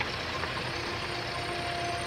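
Old open jeep's engine idling with a low, steady rumble; faint held tones come in about halfway.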